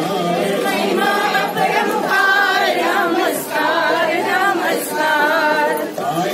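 A group of voices singing a Hindi devotional song together, unaccompanied, in phrases with brief pauses between them.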